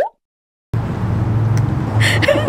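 A brief sound cut off at an edit, about half a second of dead silence, then a steady low outdoor hum.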